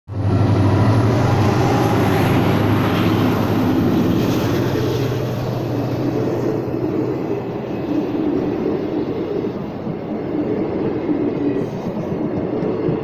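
Indian Railways diesel locomotive passing close by, its engine hum loud for the first few seconds, followed by passenger coaches rolling past with steady wheel-on-rail noise.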